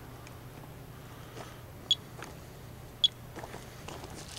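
Monitor 4 Geiger counter giving two short, high chirps about a second apart, each marking a single detected radiation count. Faint steps and rustles on wood-chip mulch are heard underneath.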